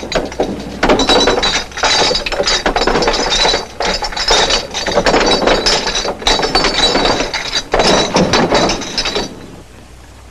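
Many glass bottles clinking and rattling against each other in repeated bursts as they are shoved and rummaged through, with a bright glassy ring; the clatter stops abruptly near the end.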